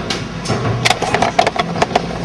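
A quick, irregular run of sharp clicks and knocks, about eight in under a second, starting about a second in, over a steady low hum.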